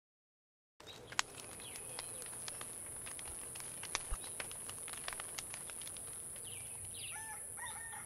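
A small wood campfire crackling, with irregular sharp pops and snaps, starting about a second in over a steady high-pitched drone. Bird calls join near the end.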